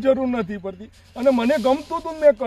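A man's speech in conversation, with a short pause about halfway through.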